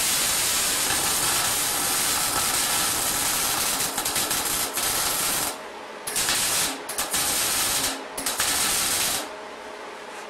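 Wire-feed (MIG) welder arc crackling and hissing as a bead is run on steel. A long run of about five and a half seconds breaks briefly and returns in a few shorter bursts, then stops about nine seconds in.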